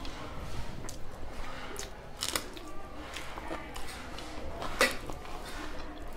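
Close-up eating sounds of a person chewing rice and vegetables with mouth smacks, a few sharp wet clicks, the loudest near the end.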